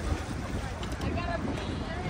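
Wind on the microphone over choppy lake water, with indistinct voices in the background.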